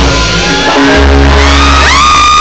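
Live band music with keyboard and a vocal, played loud in a hall, with a heavy bass line and sliding vocal notes; the phone recording runs close to full scale.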